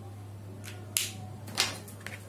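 Whiteboard eraser handled against a whiteboard: a few short scrapes and two sharp knocks, the first about a second in and the louder one half a second later, as wiping of the board begins.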